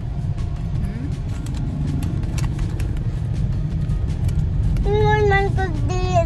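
Steady low rumble of a car's engine and road noise heard inside the cabin. About five seconds in, a young child starts singing in held notes.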